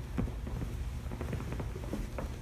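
Judo gi cloth rustling, with hands and knees patting on a foam grappling mat in several short, soft knocks as two grapplers move from lying down onto all fours. A steady low hum runs underneath.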